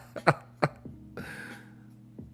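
A man's laughter tailing off in a few short huffs, then a single breathy exhale, like a cough, about a second in.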